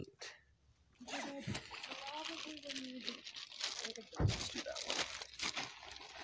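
Crinkling and crunching, a dense run of small ticks, with a single dull thump about four seconds in and faint talk in the background.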